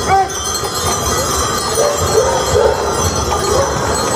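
Brass harness bells on a pair of draught horses jingling as the horses pull a wagon along the street.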